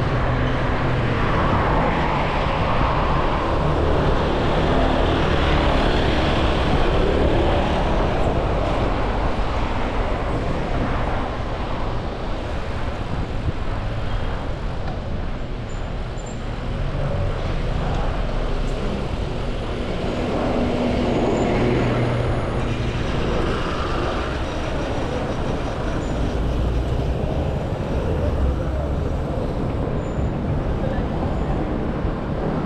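City road traffic heard from a moving bicycle: a steady rush of noise with cars driving along, swelling twice as traffic passes.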